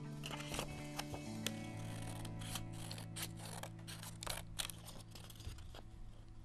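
Scissors snipping through black paper in a run of short, irregular cuts, as a bat shape is cut out. Background music with long held notes plays underneath.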